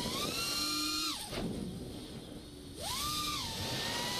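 Miniquad's brushless motors and propellers whining, recorded on board. The pitch rises as the throttle is popped, falls sharply just after a second in as the throttle drops off, and climbs back about three seconds in for the catch, then settles.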